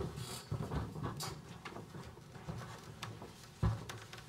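Rustling and scattered bumps as people sit down in stage armchairs and handle papers and microphones, with a sharp thump right at the start and a louder one near the end.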